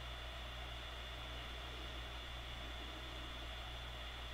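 Faint, steady hiss with a low electrical hum and a thin high whine underneath: the recording's background noise, with no handling or crafting sounds.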